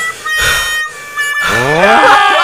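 Cartoon soundtrack music with held, harmonica-like notes. Near the end a character's cry rises sharply in pitch.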